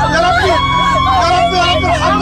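A person screaming and pleading for help in a high, strained, wailing voice, over the steady low hum of a running vehicle engine.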